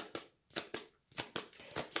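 A deck of Lenormand cards being shuffled in the hand: a quick, irregular run of light card clicks and flicks.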